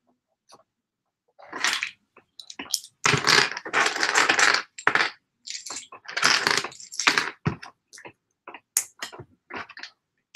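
Small plastic LEGO pieces clicking and rattling as hands sift through and handle loose bricks. The sound comes as scattered single clicks and several longer rattling bursts, the loudest from about three to five seconds in and again about six to seven seconds in.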